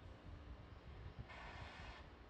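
Faint launch-pad ambience around a fuelled Falcon 9 rocket: a low rumble with a steady hum, joined about two-thirds of the way through by a hiss of propellant venting.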